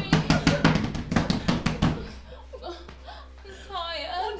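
Rapid banging with hands on a closed door: a quick run of loud knocks that starts suddenly and stops about two seconds in.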